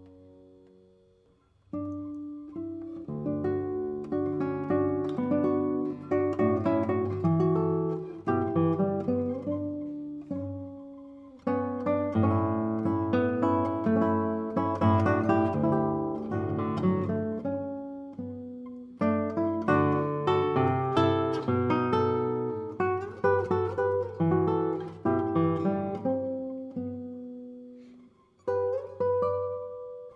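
Handmade nylon-string classical guitar by Paracho luthier José Luis Cano Alejo, played solo: phrases of plucked notes and chords. A note dies away almost to silence at the start before the playing comes back in strongly about two seconds in, with fresh phrases entering sharply near twelve, nineteen and twenty-eight seconds.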